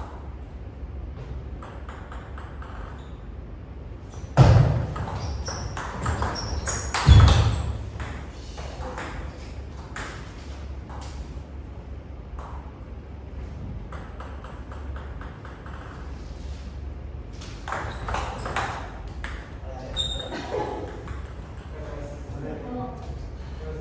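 Table tennis rallies: the ball ticking sharply off rubber bats and bouncing on the table in quick runs of strokes, with two loud bursts about four and seven seconds in.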